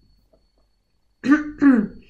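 A woman clearing her throat twice in quick succession, starting about a second in; she has a cold and a sore throat.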